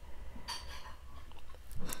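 Sheet of watercolour-painted paper being slid and rustled across a paper trimmer's base as it is lined up, with a short scratchy scrape about half a second in and a small click near the end.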